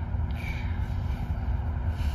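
Steady low rumble of outdoor background noise, with a fainter hiss above it.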